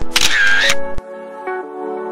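Instrumental background music with a short, loud camera-shutter sound effect laid over it at the change of photo, lasting about a second and cutting off sharply.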